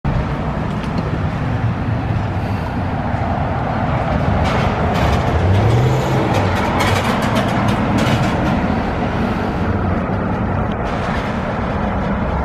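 City street traffic: cars and trucks driving past close by, with one vehicle's engine swelling and fading about halfway through.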